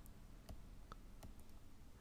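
Near silence: room tone with a few faint, sharp clicks spaced under half a second apart.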